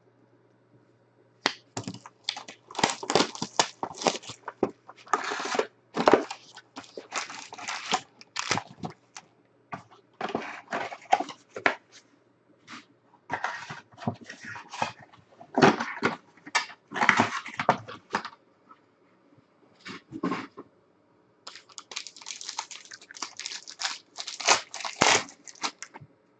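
Foil trading-card pack wrappers being torn open and crinkled, in repeated bouts of crackling with short pauses between.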